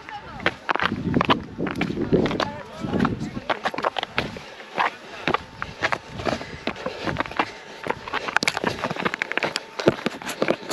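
Trail-running shoes striking and scuffing on rocky limestone ground in quick, irregular footsteps, with sharper clicks about eight seconds in.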